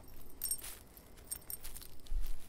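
Metal tags on a dog's collar jingling in a series of short, irregular clinks as the dog trots.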